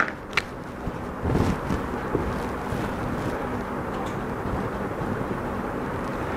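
Steady background noise of a classroom, with a short click just after the start and a brief low bump about a second and a half in.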